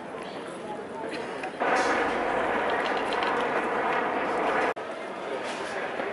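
Indistinct voices of a crowd of people talking, with no words clear, growing louder about a second and a half in. The sound breaks off abruptly nearly five seconds in, then the chatter resumes more quietly.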